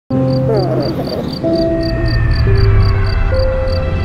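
Crickets chirping in a steady rhythm, about four chirps a second, over a low rumbling drone and held synthesizer notes that step to new pitches every second or so.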